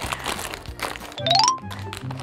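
Plastic snack bag crinkling as it is pulled at with both hands to tear it open, without the seal giving way. Background music plays throughout, and a short rising whistle sounds about a second and a half in.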